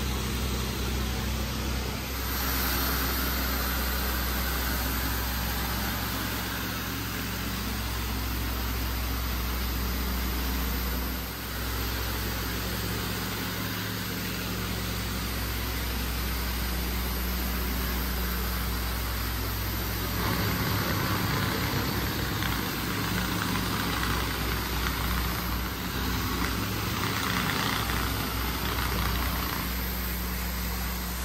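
Steady low drone of floor-cleaning extraction equipment with a constant hiss, as cleaning solution is sprayed onto a vinyl plank floor and a rotary hard-surface spinner tool rinses and vacuums it. The sound turns rougher and hissier about two-thirds of the way through.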